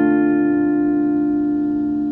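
A D minor chord on a semi-hollow electric guitar, left ringing and slowly fading.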